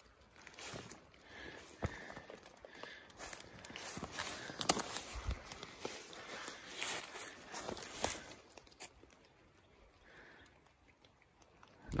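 Footsteps through dry dead leaves, an uneven rustling and crackling with a click here and there, stopping about three-quarters of the way through.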